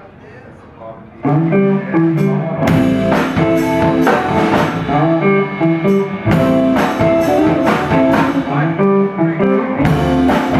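A live blues band starts playing about a second in: electric guitars playing a riff over a drum kit, with regular drum and cymbal hits.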